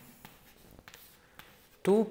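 Chalk writing on a chalkboard: a handful of short, faint scratches and taps as the strokes are written.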